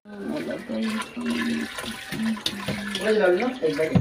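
Water pouring steadily from a rubber hose into a top-loading washing machine tub of soapy water, splashing and running into the pool, with voices in the background.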